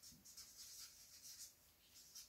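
Faint scratching of a marker pen writing on paper, in short strokes.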